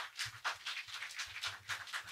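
Faint, scattered handclaps from a small audience, irregular, a few each second.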